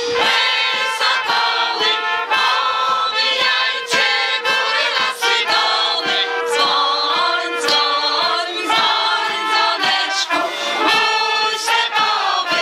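Massed folk choir of many voices, women and men, singing a folk song together in unison, over a steady regular beat.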